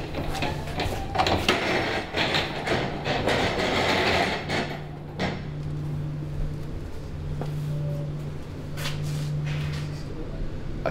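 Large metal-framed kiln doors being pulled open: a few seconds of rattling and scraping with some knocks, then a steady low hum from the timber-drying kiln.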